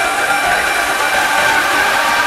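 Beatless breakdown in a progressive house track: a held synth chord over a steady wash of white noise, with no drums.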